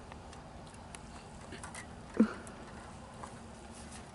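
Faint light clicks of playground tic-tac-toe spinner blocks being turned by hand, over steady low background noise. About halfway through there is one short vocal sound.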